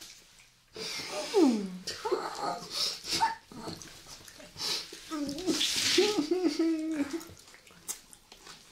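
Wordless vocal reactions from young women: a voice sliding down in pitch about a second in, then a wavering hummed 'mmm' held for about two seconds near the end, with a brief hiss in the middle of it.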